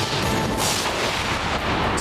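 TV news headlines theme sting: dramatic music with heavy booming hits and a swelling whoosh about half a second in.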